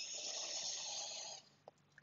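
A person's long audible breath in, a breathy hiss that lasts about a second and a half before stopping.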